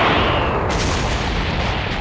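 Cartoon energy-blast explosion sound effect: a loud, continuous blast of noise whose high hiss drops away about two-thirds of a second in while the low rumble carries on.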